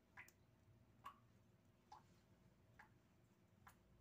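Near silence, with faint, sharp ticks coming evenly a little under a second apart, five of them.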